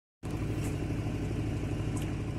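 Ford Transit Connect 1.8 TDCi four-cylinder diesel engine idling steadily, cutting in abruptly after a brief silence at the start.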